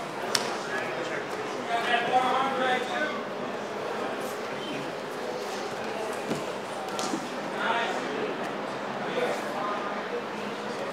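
Indistinct voices of onlookers calling out, with a few sharp slaps and thuds of bodies and hands on grappling mats.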